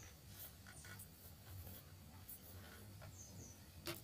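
Near silence: faint room tone with a low steady hum and a short click near the end.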